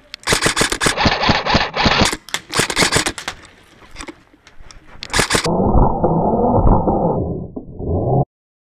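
Airsoft gun firing in rapid bursts, a quick run of sharp clicks, for about five seconds. After that comes a few seconds of loud muffled rumbling noise that cuts off abruptly near the end.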